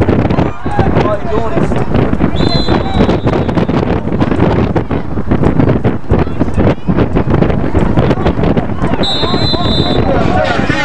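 Spectators' overlapping voices and shouts, with wind buffeting the microphone. A high, steady whistle blows briefly about two and a half seconds in, and again near the end.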